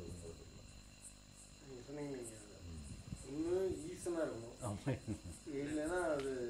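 Crickets chirping in a steady, even rhythm of faint high chirps.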